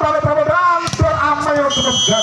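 Referee's whistle at a volleyball match: one short, steady, high blast near the end, blown as the rally ends. A voice carries on underneath.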